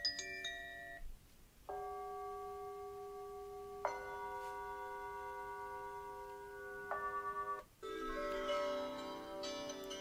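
Mudita Harmony alarm clock's small speaker playing previews of its built-in alarm melodies one after another. Soft chime-like tones ring out, with a new tune starting every few seconds after short gaps, and a busier, fuller melody near the end.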